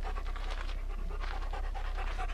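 Black Labrador retriever panting steadily with its mouth open.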